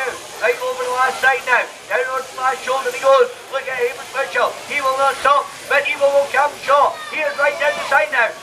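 Loud, continuous shouting: a raised voice calling without pause, high-pitched and strained, its words unclear.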